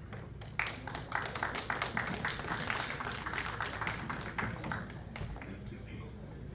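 Audience applauding, starting about half a second in and thinning out near the end.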